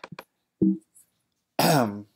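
A couple of quick computer-mouse clicks, then a man's short wordless vocal sounds: a brief grunt-like hum about half a second in, and a longer 'uh' falling in pitch near the end.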